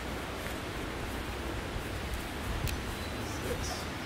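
Steady rushing of a river's running water, with a low rumble underneath and a faint click or two.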